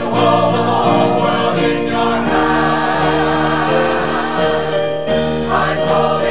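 Mixed church choir of men and women singing a gospel anthem in sustained chords that change every second or so.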